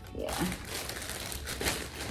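A thin plastic carrier bag crinkling and rustling continuously as a hand rummages inside it.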